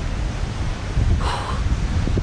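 Wind buffeting the microphone in a steady low rumble, with surf behind it. About a second in comes one short, heavy breath from someone winded by walking.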